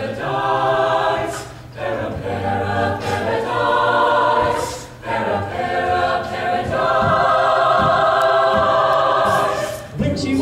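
Mixed a cappella choir singing wordless held chords, with a bass voice underneath. The chords change every second or two, with short dips between phrases.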